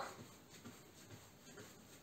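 Near silence, with faint soft thuds of stockinged feet landing on an exercise mat, about two a second, during a jumping exercise.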